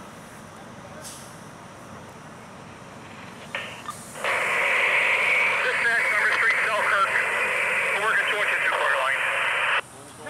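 Fire department radio transmission: a loud, tinny burst of static with a garbled voice in it comes on about four seconds in and cuts off abruptly just before the end. Before it there is only a low, steady background hiss.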